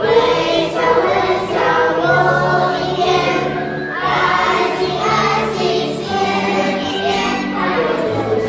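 A large group of children singing a Mandarin song together over a recorded music backing with a steady bass line.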